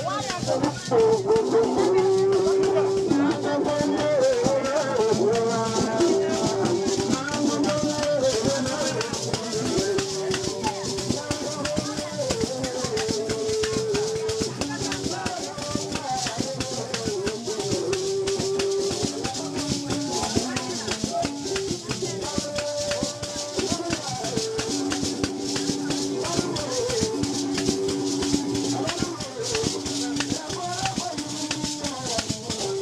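Traditional music: rattles shaken in a steady dense rhythm under a plucked string lute whose melody moves between short held notes.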